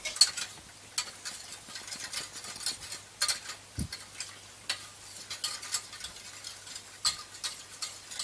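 A metal spoon stirring milk in a stainless steel saucepan, scraping and clicking against the pan at irregular intervals, with a faint steady low hum underneath.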